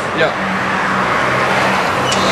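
A car driving by on the street: a steady engine hum under tyre and road noise.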